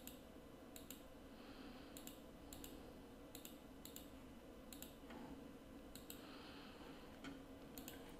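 Faint computer mouse clicks at uneven intervals, about a dozen of them, each a quick pair of ticks from the button going down and coming back up, over a low background hiss.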